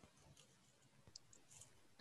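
Near silence: room tone, with two faint clicks in the second half.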